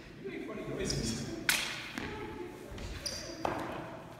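Training weapons striking each other during sparring: two sharp clacks about two seconds apart, the first the loudest, echoing in a large hall.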